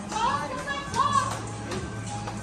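Onlookers shouting encouragement in short calls, one near the start and another about a second in, over background music.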